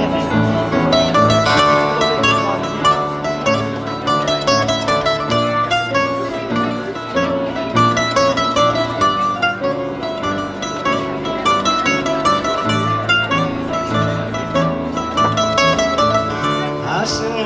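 Instrumental introduction to a Greek song played live on plucked string instruments: quick runs of plucked notes over a steady, repeating bass line, with no singing yet.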